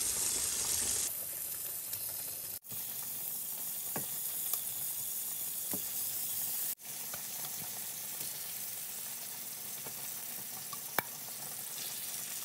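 Chicken thigh pieces sizzling in melted butter as they are laid skin-side down in a large non-stick frying pan, with a few light clicks of a fork against the pan. The sizzle breaks off abruptly twice.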